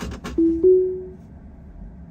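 Tesla Model 3's Autopilot engagement chime as Full Self-Driving Beta is switched on: two soft rising tones, the second held and fading. A few brief clicks come just before.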